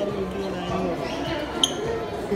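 Low background voices in a shop, with one short high squeak about one and a half seconds in.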